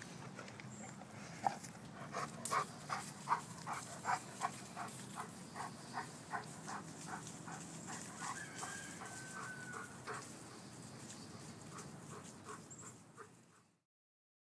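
An Alabai (Central Asian Shepherd) dog whimpering in a rapid series of short whines, about two to three a second, with one longer, higher whine near the end of the run before it fades out.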